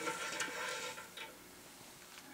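A few faint metallic clicks and light rubbing as the drill press table bracket's locking handle is turned to loosen the clamp on the steel column.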